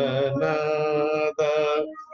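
A man singing long, steady held notes of a devotional song in Indian classical style, with a brief break about one and a half seconds in.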